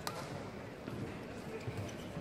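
A badminton racket strikes the shuttlecock once, a single sharp hit just after the start, over a steady background murmur of spectators talking.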